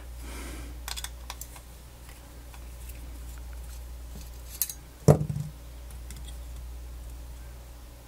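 Small screwdriver working a tiny screw in a smart plug's plastic housing: scattered light clicks and scrapes of metal on metal and plastic, with one louder, sharper click about five seconds in.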